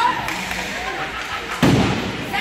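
A single heavy thud about one and a half seconds in, typical of a puck or player hitting the rink's dasher boards, over the chatter of spectators' voices.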